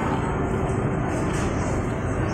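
Steady background noise inside a busy shopping centre: an even, constant hum and hiss with no distinct events.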